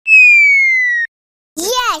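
A cartoon sound effect: a single whistle-like tone that slides slowly downward for about a second, then cuts off.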